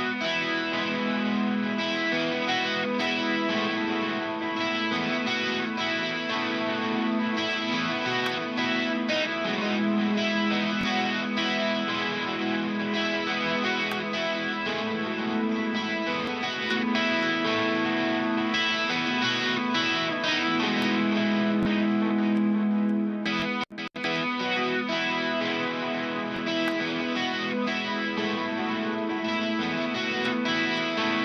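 Lead electric guitar track, with some distortion, playing back through a Klark Teknik BBD-320 (a clone of the Roland Dimension D), which adds an analogue chorus, while its mode buttons are switched. The playback breaks off briefly about 23 seconds in and then resumes.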